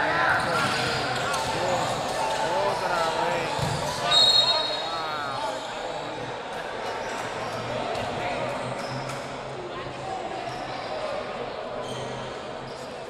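Basketball game in a large gym: spectators' voices and shouts mixed with sneakers squeaking on the court and the ball bouncing, with a short shrill tone about four seconds in.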